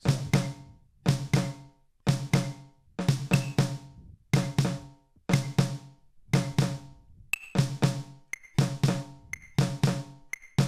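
Snare drum played with wooden drumsticks in short clusters of quick sixteenth-note strokes, about one cluster a second. Each cluster rings out with a pitched drum tone before the next one starts.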